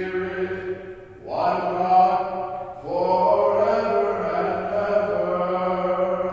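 A man chanting a liturgical text solo and unaccompanied, in long sustained notes, with new phrases beginning about one and three seconds in.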